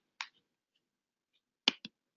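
A quiet pause broken by short sharp clicks: one just after the start and a quick pair near the end.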